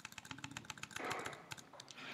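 Quick run of faint computer-keyboard keystrokes, a rapid string of short clicks, as placeholder text is deleted in a terminal command.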